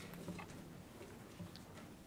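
Faint, scattered clicks and shuffling as people stand up from their chairs, over a low room hum.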